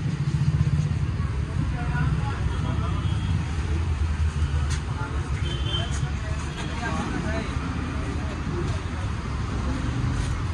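Street ambience: a steady low rumble of vehicle traffic, with indistinct voices in the background.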